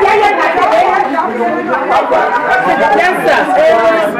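Several voices talking at once: overlapping group chatter, with no one voice standing clear.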